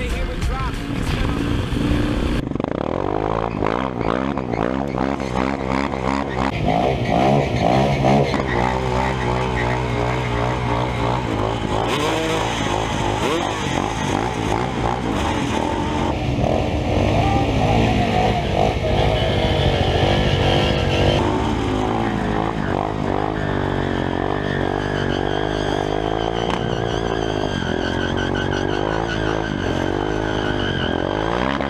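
Supermoto motorcycle engines revving, the pitch rising and falling again and again, as one bike is held at high revs for a rear-wheel burnout. Rap music plays for the first two seconds, then cuts out.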